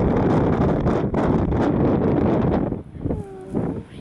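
Gusting wind buffeting the microphone, easing about three seconds in, when a short pitched call with a falling pitch is heard.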